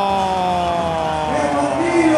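A man's long, drawn-out "ohhh" that slowly falls in pitch and fades about a second and a half in, over crowd noise, as a reaction to a shot on goal. Other voices start near the end.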